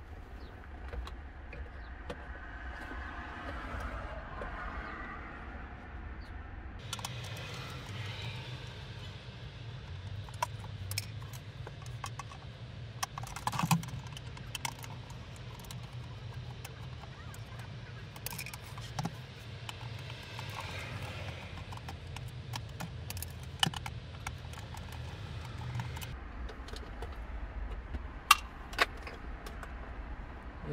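Intermittent plastic clicks and rattles from a car's AC control panel and its wiring connectors being handled in an opened dashboard, over a steady low hum that comes in about seven seconds in and stops near the end.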